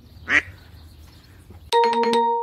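A bird gives a single short, loud call about a third of a second in. Near the end an edited-in transition sound effect comes in: a few sharp clicks and a ringing chime.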